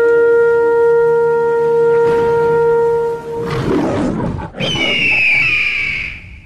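Intro sound effects: a long held horn note that stops a little over three seconds in, a rushing whoosh, then a high animal cry that falls slightly in pitch and fades out at the end.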